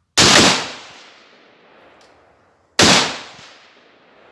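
Two rifle shots from a Mossberg MMR Pro AR-15 in .223 Remington, about two and a half seconds apart. Each crack is followed by an echo that fades over about a second.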